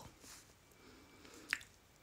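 Near silence in a pause between spoken phrases, broken by one short, faint click about one and a half seconds in.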